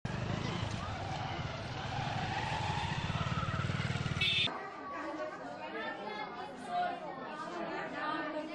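A vehicle engine running close by, with street noise and voices, for about four and a half seconds. It then cuts abruptly to indoor chatter of several voices.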